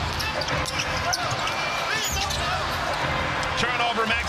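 A basketball being dribbled on a hardwood court, with sneakers squeaking, over steady arena crowd noise. The squeaks cluster near the end.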